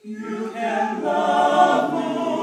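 Small men's vocal ensemble singing a cappella in close harmony. The voices come in together right at the start after a brief pause and swell into a full sustained chord within the first half second.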